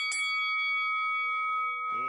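A bell-like chime rings out and holds steadily, one sustained ringing tone opening a logo music sting; near the end a lower tone comes in beneath it.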